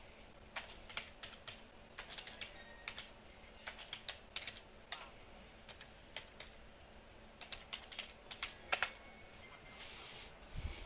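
Typing on a computer keyboard: irregular key clicks, a few per second, with a louder burst of strokes near the end.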